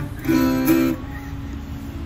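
Freshly tuned acoustic guitar played to check the tuning: a chord sounds about a quarter second in, rings loudly for under a second, then fades.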